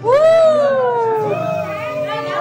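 A person's long, high-pitched squeal that rises quickly and then slides slowly down in pitch over about a second, followed by a quieter cry.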